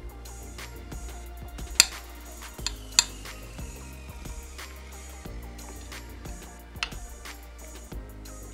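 Background music playing, with a metal spoon clinking sharply against a plate three times as food is scooped from it.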